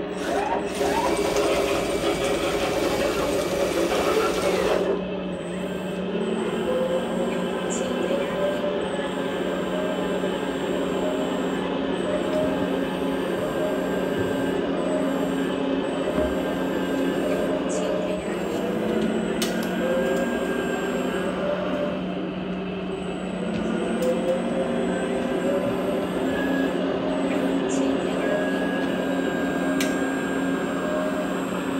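1/14-scale hydraulic D11T RC bulldozer running, with the steady mechanical hum of its electric hydraulic pump and drive motors. It is louder for the first few seconds, then settles to a slightly quieter steady hum.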